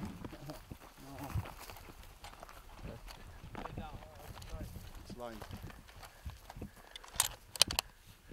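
Bolt of a scoped hunting rifle being worked to reload: three sharp metallic clicks close together near the end.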